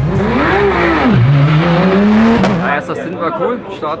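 Porsche 911 GT3 Cup race car's flat-six engine revving: the pitch swings up and down once, then climbs steadily as the car pulls away, cutting off abruptly about two and a half seconds in.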